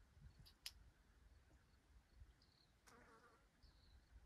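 Near silence: faint outdoor ambience, with a few faint short chirps and a brief buzz about three seconds in.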